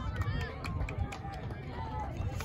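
Players and spectators calling out across an open soccer field during play, with scattered short clicks and an uneven low rumble underneath.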